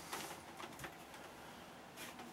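Faint handling noise as large stretched canvases leaning against one another are shifted, with a light knock a little under a second in.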